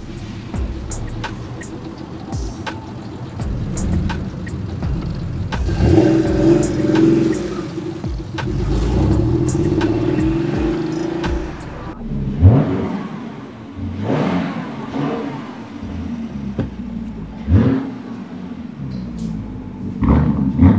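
Porsche 911's flat-six engine running as the car pulls away, growing louder and revving harder in the middle; in the second half come a few short rising revs as it accelerates, with street traffic around it.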